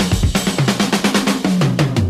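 Rock music with a rapid drum-kit fill of snare and bass-drum strokes, and a bass note that slides down in pitch near the end.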